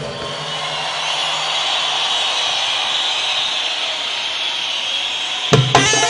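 A steady rushing noise with no tune fills a break in a Palestinian patriotic folk-style song. About five and a half seconds in, a drum hit brings the percussion and band back in.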